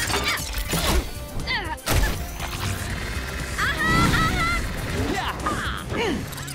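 Cartoon action soundtrack: background music under sharp crash and impact effects about one and two seconds in, with short vocal exclamations from the characters in the middle.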